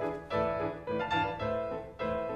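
Classical piano music: a run of struck notes and chords, each fading before the next.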